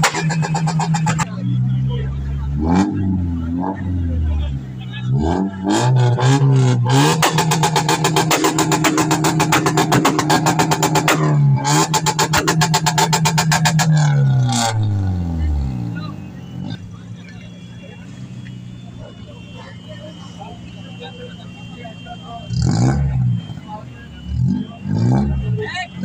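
Modified sedan engine revved hard through a loud aftermarket exhaust. It climbs and falls several times, then is held high with a rapid stuttering pulse for several seconds. About two-thirds of the way through it drops back to a steady idle, with a short sharp rev near the end.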